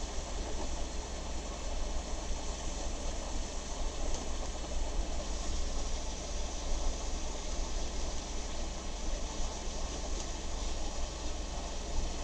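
Pointed steel dip-pen nib (Hunt school nib) scratching across sketchbook paper through a run of ink strokes, a scratchy hiss that rises and falls with the strokes.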